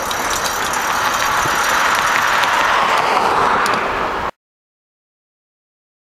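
Steady rushing riding noise from a tall bike moving along a road, with a few faint clicks, cutting off suddenly about four seconds in.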